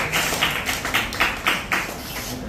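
Hand clapping in a steady rhythm, about three to four claps a second.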